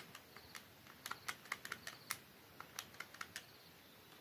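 Faint, quick, irregular clicks of a Casio fx-991ES PLUS scientific calculator's rubber keys being pressed one after another, about twenty presses in four seconds, as a long sum is keyed in.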